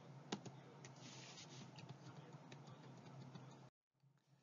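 Near silence: faint room hiss with a few faint computer-key clicks as the lecture slides are advanced. The sound then cuts out completely shortly before the end.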